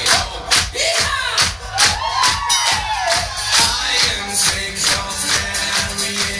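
Live banjo, acoustic guitar and drum band playing, with band and audience clapping along on the beat a little over twice a second. Crowd voices whoop and call out in rising-and-falling shouts during the first half, and sustained instrument tones come in near the end.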